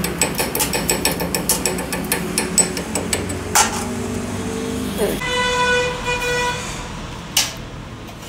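A metal lathe turning a welded camshaft, its mechanism clicking rapidly and evenly for the first three seconds or so, with a few single metal clanks. About five seconds in, a steady horn-like tone sounds for about a second and a half.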